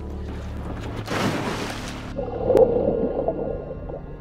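A person dunked into water in a film soundtrack: a splash about a second in, then muffled underwater bubbling and gurgling.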